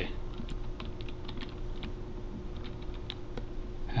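Computer keyboard being typed on: a run of light, irregularly spaced key clicks.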